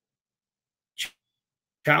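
Silence, then one short, sharp breath about a second in, and a man's voice starting to speak near the end.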